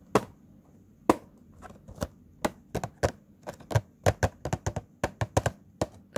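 Fingers tapping on a Funko Pop cardboard box with a plastic window, giving sharp dry taps. A few spaced taps at first, then quickening into a rapid irregular run in the second half.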